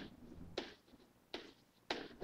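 Pen stylus tapping and stroking on a digital writing surface as digits are handwritten: about four short, faint taps spread over two seconds.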